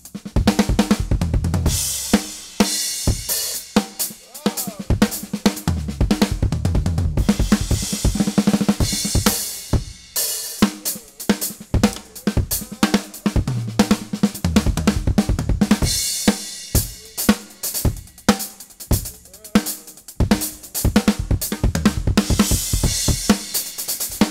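Tama Starclassic drum kit played in a continuous funk groove built on paradiddle-style diddle stickings, with dense snare, bass-drum and hi-hat strokes. Ringing low tom notes and crash cymbal washes come back every several seconds, marking the ends of phrases.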